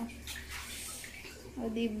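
Water running from a tap into a stainless-steel kitchen sink, a steady hiss over a low hum, with a woman's short remark near the end.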